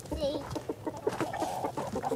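Backyard hens clucking in a coop, a run of short calls.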